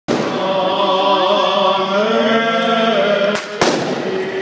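Orthodox Easter chant sung by several male voices, with held and slowly gliding notes, over a steady crackle of firecrackers. Two sharp firecracker bangs go off close together near the end.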